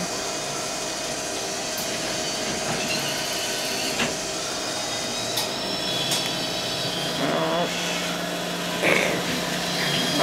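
Hot dog vending machine running while it prepares a hot dog: a steady mechanical whirring hum, with a few light clicks midway.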